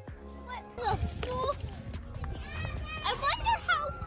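Children's voices calling and chattering, high-pitched and unintelligible, with low wind rumble on the microphone. A short stretch of background music fades out at the very start.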